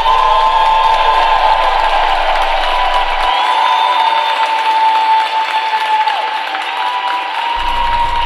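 Arena audience applauding and cheering, with a high, held tone that steps to a new pitch a few times running over the clapping.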